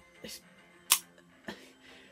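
A sharp click about a second in and a fainter one half a second later, over faint music from the title sequence.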